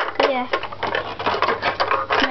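Rapid, irregular plastic clicking and rattling from a Nerf Vulcan EBF-25's linked dart belt being handled and fed into its ammo box.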